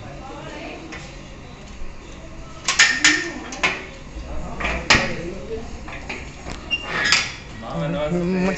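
Sharp metallic clanks and rattles of a steel gate's bolt and latch being worked and the gate opened. Loud knocks come a little under three seconds in, around three and a half and five seconds, and again near seven.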